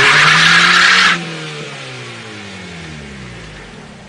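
Car engine revving high while the tyres screech across the pavement as the car slides sideways into a parking space; the screech cuts off suddenly about a second in. The engine revs then fall slowly and fade out near the end.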